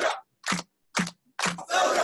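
Film trailer soundtrack: two short sharp sounds about half a second apart, then music with voices coming in about one and a half seconds in.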